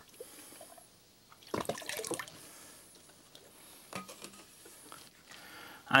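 Liquid poured from a small measuring cup into a bucket of water, with a brief splash about a second and a half in and a smaller drip later.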